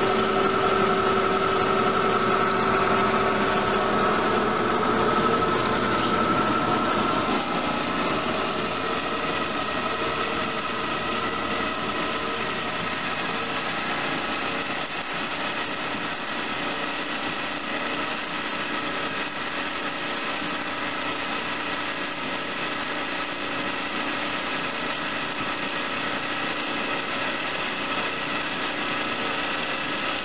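Amada HA250W horizontal band saw running steadily, with a whine in the first several seconds that drops away about five seconds in, leaving an even machine noise.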